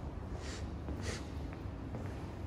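Steady low room hum with two short hissy, breath-like sounds about half a second apart near the middle, and a faint footstep on a marble floor.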